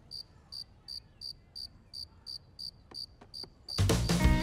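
Crickets chirping in an even rhythm, about two and a half chirps a second, standing in for an awkward silence after a joke falls flat.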